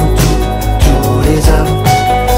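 Rock song in an instrumental passage with no singing: electric bass and sustained chords over drum hits.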